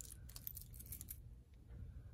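Faint, light clicking of stainless steel watch bracelets being handled, a run of quick clicks in the first second or so, then quieter.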